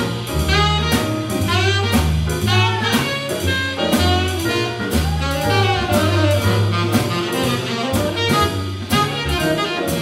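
Live small-group jazz: a saxophone playing a lead line with bending, sliding notes over a walking upright bass, piano and drum kit with steady cymbal strokes.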